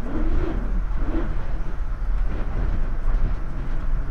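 Strong storm wind gusting and buffeting the microphone in a deep, steady rumble, with rain hissing behind it.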